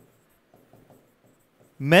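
Marker pen writing on a whiteboard: faint, scattered scratches of short strokes, then a man's voice starts near the end.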